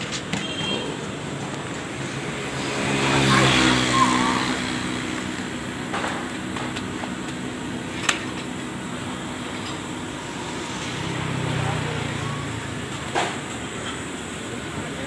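Roadside traffic: a motor vehicle engine swells past about three seconds in, and a fainter one passes near the end. A single sharp slap comes about eight seconds in, as a rolled paratha is slapped onto the griddle.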